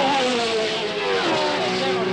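1960s Formula One racing car engines passing at speed, the note falling as a car goes by, twice: once at the start and again about a second in.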